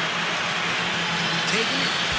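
Steady arena crowd noise, an even wash with no distinct voices, with a faint short voice near the end.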